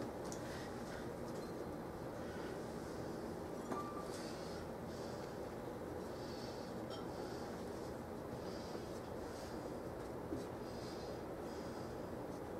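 Faint soft scuffing of hands pressing ground-meat and potato filling onto pastry dough on a countertop, with two light knocks, about four seconds in and near ten seconds, over a steady room hum.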